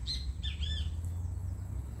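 A bird chirping: a quick few short, arched whistled notes in the first second, over a steady low rumble.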